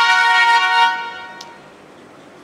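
Duolingo app's lesson-complete jingle: a bright chord of several steady electronic tones, held for about a second and then fading out. A faint click comes near the end of the fade.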